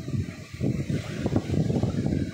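Gusty wind buffeting the microphone, a loud, uneven low rumble that swells and dips.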